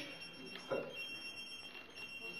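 A telephone ringing: a steady high electronic ring tone sounds through the hall, with a man saying one word over it.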